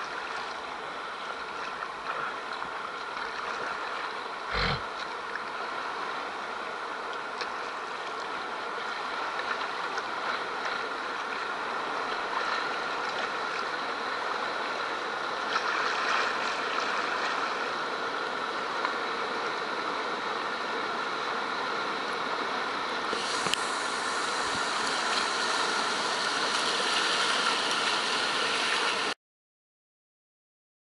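River rapids rushing, growing gradually louder as the kayak draws near the white water, with a single thump about five seconds in. The sound cuts off suddenly near the end.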